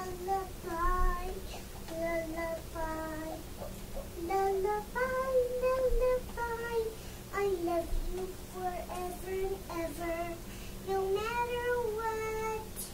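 A young girl singing her own lullaby with no accompaniment: a slow melody of held notes, some sliding up or down between pitches.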